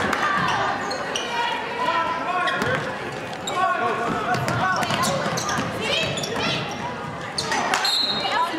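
Basketball dribbled on a hardwood gym floor, with many overlapping crowd voices and shouts echoing in the large gym.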